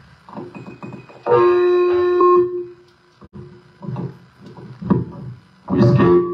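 Electronic keyboard playing a held chord for about a second, starting a little over a second in. A louder burst of music starts near the end.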